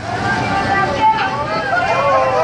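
People's voices calling out, not clear words, over the low running noise of a passing road-train ride vehicle, with a sharp click about a second in.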